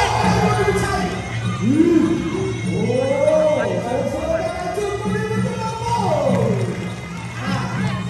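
Traditional Kun Khmer ring music: drums keeping a steady beat under a wavering pipe melody that glides up and down, with crowd voices.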